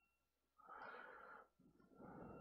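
Faint breathing close to the microphone: one soft breath about half a second in, lasting about a second, and another starting near the end.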